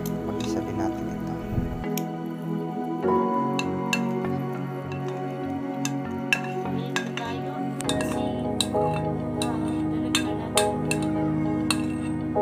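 Background music with sustained tones, over which a metal spoon repeatedly clinks and scrapes against a ceramic plate as meat is scraped off into a cooking pot, in short sharp clicks that come more often in the last few seconds.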